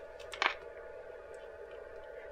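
Quiet room tone with a faint steady hum, and one short, soft sound about half a second in.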